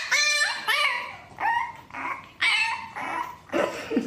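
French bulldog puppy yipping and whining: about six short, high-pitched calls, each bending in pitch.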